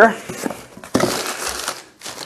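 Newspaper packing paper crinkling and rustling as a part is unwrapped and pulled out of a cardboard box, swelling about a second in and fading before the end.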